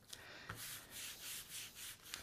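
Faint, quick strokes of a melamine-foam sponge (Mr. Clean Magic Eraser) scrubbing across watercolour paper, about three strokes a second. It is lifting dark pigment through a gap between strips of masking tape to lighten a line.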